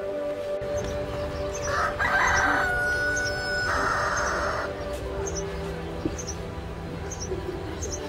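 A rooster crowing once, loud and drawn out, starting about two seconds in, over steady background music. Small birds chirp now and then.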